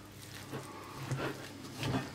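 A wooden spoon stirs a sticky mixture of oats, nuts and honey in a stainless steel pot: three faint, soft scrapes and squelches.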